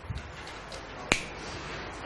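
A single sharp click about a second in, over quiet room tone.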